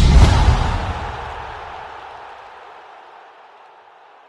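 Broadcast logo sting for an ESPN+ outro card: a deep impact hit with a hissing swoosh, loudest at the start and fading steadily away over about three seconds.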